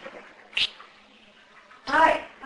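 Garbled voice fragments from the Echovox ghost-box app played through a small portable speaker: a brief blip about half a second in, then a longer pitched vocal sound starting near the end.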